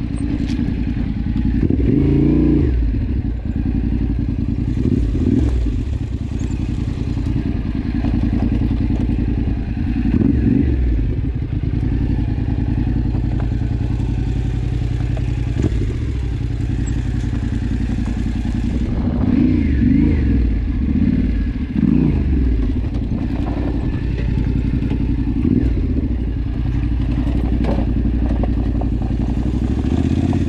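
Yamaha Ténéré 700 Rally's parallel-twin engine through an Akrapovič exhaust with the dB killer removed, running at low revs with several short throttle blips over a rocky trail. Loose stones and the bike clatter under the tyres.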